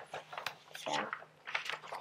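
A sheet of drawing paper rustling and crackling as it is handled close to the microphone: a quick, irregular run of sharp crackles.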